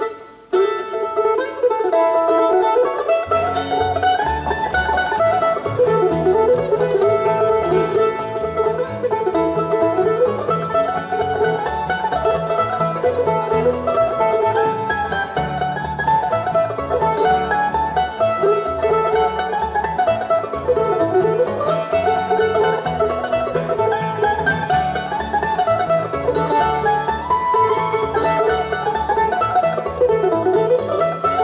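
Bluegrass band playing an instrumental tune on fiddle, mandolin, banjo, acoustic guitar and upright bass. The tune starts abruptly at the beginning, and the low end of the band comes in about three seconds later.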